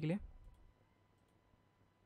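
A few faint computer mouse clicks against low room hiss.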